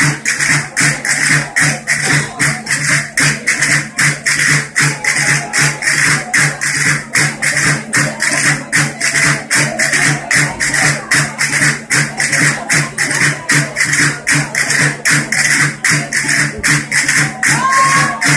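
Asturian folk dance music of gaita (bagpipe) and drum: a tune over a steady drone, with a quick, even percussion beat.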